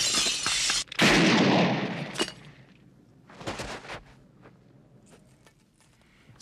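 Window glass smashing: a loud crash, then a second crash about a second in that dies away over about a second. A few smaller crashes of breaking glass follow.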